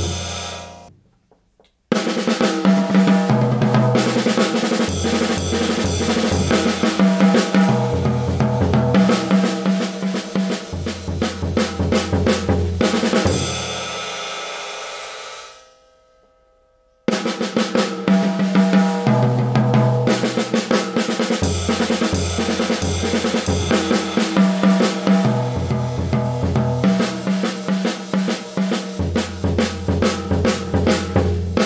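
Jazz drum kit played with sticks: a swinging eight-measure solo on snare, toms, bass drum and ride cymbal, played through twice. The first take dies away to a short silence just past the middle, and the second starts straight after.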